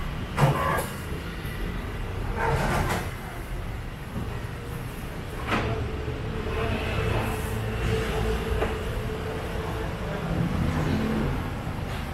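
A kitchen knife cutting small fruits on a plastic cutting board, with a few short knocks of the blade and fruit on the board, the loudest about half a second in. A steady low rumble runs underneath.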